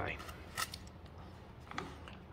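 Quiet room tone with a single brief tap about half a second in, from light handling on the workbench.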